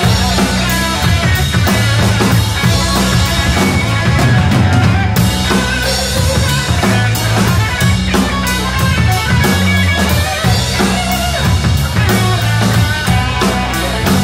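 Rock band playing live, instrumental with no singing: a drum kit with cymbals keeping a steady beat under electric guitars, with low notes stepping along beneath.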